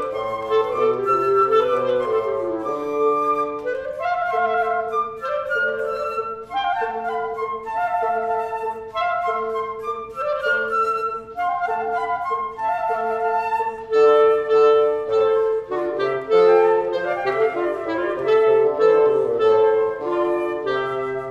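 Woodwind trio with flute and bassoon playing a classical-style piece: a low bassoon line under a middle voice repeating one note in even pulses, with a flute melody above.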